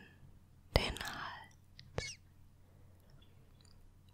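Close-miked, soft, wet clicks and a brief breathy hiss as oiled fingertips work coconut oil into the cheeks and chin: one click about a second in trailing into a short hiss, and another click at about two seconds. The rest is quiet.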